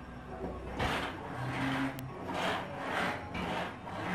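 Suspended balance-training platform swaying on its hanging chains, giving a rubbing, creaking noise that swells about five times.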